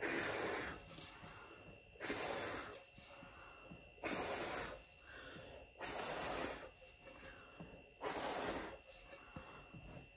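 A person blowing hard by mouth onto wet acrylic pour paint, five long puffs of breath about two seconds apart, pushing the paint out toward the edges of the panel.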